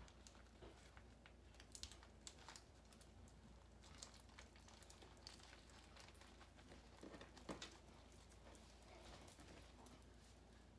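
Near silence with faint, scattered rustles and soft clicks from hands rolling a filled flour tortilla on a countertop, a few ticks a little louder than the rest.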